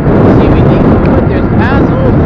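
Heavy wind noise buffeting the microphone while riding along a road, with a man's voice partly heard under it.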